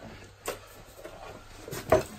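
Faint handling of a plastic booster pump and its washers on a worktop. There is a light click about half a second in and a short knock near the end.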